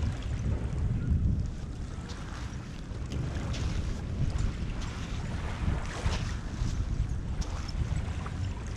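Wind buffeting the microphone in a steady low rumble, with faint footsteps on gritty sand and shards.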